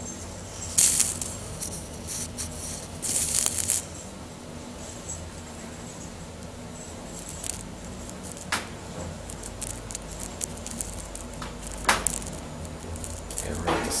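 Steady low hum inside a KONE traction elevator's cab, broken by two short rattling bursts about one and three seconds in and a few sharp clicks towards the end.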